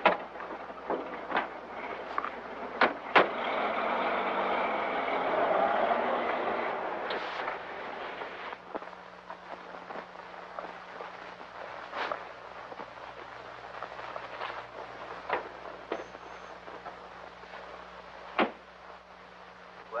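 A car door shutting sharply, then an old car's engine running as it drives off, loudest about six seconds in and fading away by about eight seconds. Scattered clicks and the hum and hiss of an old film soundtrack run underneath.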